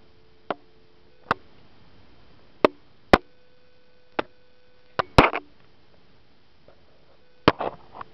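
Faint dial tone from the receiver of a Northern Electric 354 rotary wall telephone, a steady hum that fades in and out. About eight sharp clicks and knocks from the handset being handled are louder than the tone.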